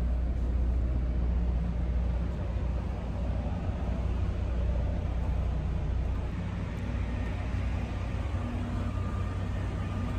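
Steady low hum of an idling coach bus, heard from inside its passenger cabin.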